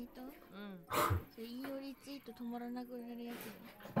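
Women's voices speaking Japanese in an animated clip, with long drawn-out vowels and a short loud outburst about a second in.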